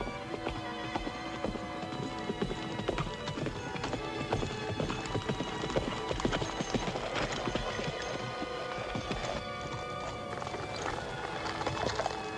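Horses' hoofbeats clip-clopping, with a background film score running throughout.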